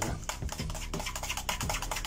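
Stirring a thick yogurt dip in a stainless steel bowl: quick, repeated scraping and clicking strokes of the utensil against the metal.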